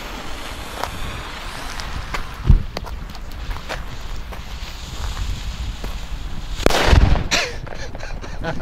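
A lit Funke China Böller D firecracker's fuse hissing and sputtering for several seconds, with a dull thump about two and a half seconds in. It then goes off with one loud bang about seven seconds in.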